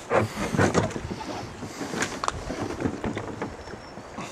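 Water splashing around a kayak on a river, with irregular knocks and splashes over a steady hiss of moving water and some wind on the microphone.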